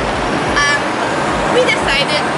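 Steady city street traffic noise, with a short vehicle horn toot about half a second in.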